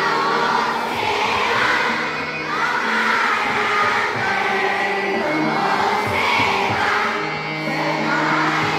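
A group of adult voices singing together in unison, a devotional song with harmonium and tabla accompaniment.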